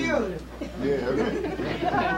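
Several people talking over one another, indistinct, over a steady low hum.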